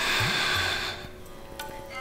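A breath of about a second, a noisy rush of air, as she leans back into a yoga pose. It sits over background music with soft sustained tones.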